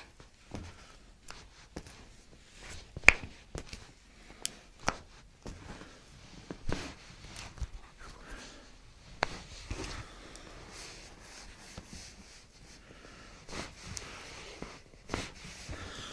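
Quiet handling sounds of hands working a patient's feet and legs on a chiropractic table: scattered soft taps, clicks and rustles, with one sharper click about three seconds in.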